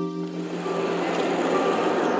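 Background music of held synthesizer-keyboard chords, fading out about half a second in, giving way to a steady noisy ambience with a few faint tones.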